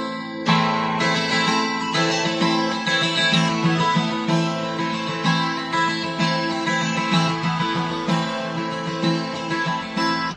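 Acoustic guitar strummed and picked, a steady chord pattern with chords restruck about every second: the instrumental intro to a slow blues song.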